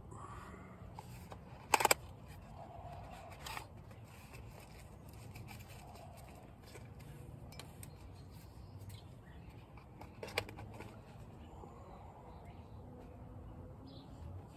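Cooking gear being handled: a few sharp clicks and knocks, the loudest about two seconds in and smaller ones near four and ten seconds, over a low steady background.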